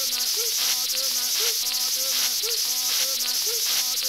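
Dense, high, insect-like chirring with a looped pattern of short pitched tones repeating about once a second, like a layered soundscape track.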